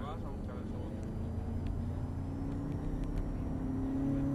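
Volkswagen Golf VII GTI's turbocharged four-cylinder engine heard from inside the cabin, pulling under acceleration out of a corner, its note rising slowly in pitch and getting louder. A few short clicks come through in the middle.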